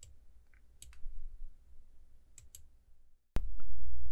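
Computer mouse clicking a few times, mostly in quick pairs, about a second in and again about two and a half seconds in. A little over three seconds in, a steady low hum comes in suddenly.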